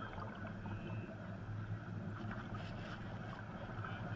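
Seawater from a wave washing across the sand in a steady rushing hiss, with a low rumble of wind on the microphone.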